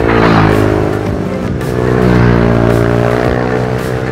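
Ohvale minibike engine revving past on the track, loudest about half a second in and again about two seconds in, over background music with a steady beat.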